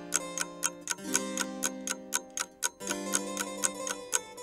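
A quiz answer countdown: clock-like ticking, about four ticks a second, over sustained music chords that change twice.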